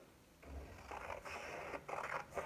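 Scotch scissors cutting through several layers of folded white paper: a faint, steady rasp of the blades through the sheets, starting about half a second in.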